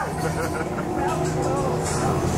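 Haunted-house ambient sound: a steady low droning rumble with faint voices over it.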